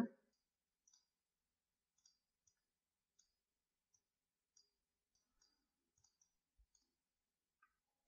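Near silence, with faint scattered clicks of a computer mouse.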